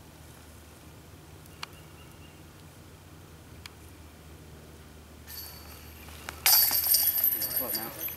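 A putted golf disc hitting the chains of a disc golf basket near the end, the metal chains rattling and jingling loudly as the putt goes in.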